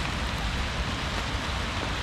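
Steady rain: an even hiss with no breaks.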